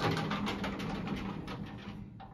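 Collapsible metal wraparound gate of a vintage Otis elevator being slid by hand, its bars and pivots rattling and clicking, loudest at the start and dying away.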